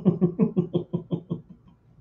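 A man laughing: a quick run of short 'ha' pulses, about seven a second, that fades out about a second and a half in.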